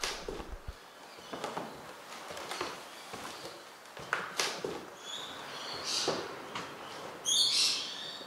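Footsteps on bare wooden floorboards and debris, a step about every second, with a bird chirping a few times and calling loudly once near the end.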